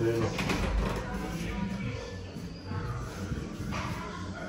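A brief vocal sound right at the start, then low, indistinct voices over a rumbling handling noise.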